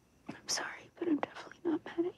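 A girl whispering a short sentence of apology.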